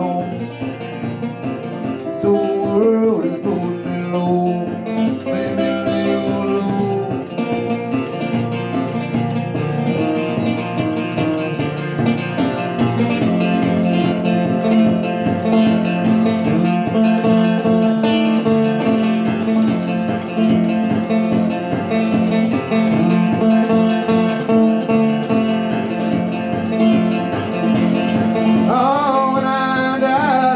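Solo steel-bodied resonator guitar fingerpicked in an instrumental break between verses, with a steady low bass note running under the melody; singing comes back right at the end.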